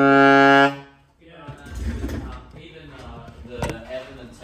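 Yamaha YAS-62 alto saxophone holding a long low note that swells louder and stops about three-quarters of a second in, on a play test of the freshly regulated horn. After a short gap there is rustling handling noise, with a single knock near the end.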